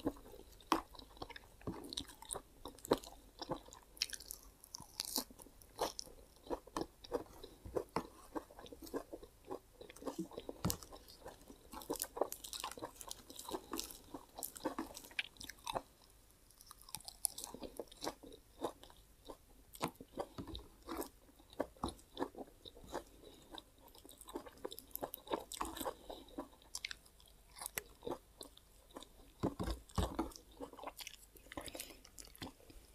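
A person chewing and biting raw leafy greens close to the microphone: many small, irregular crunches and clicks.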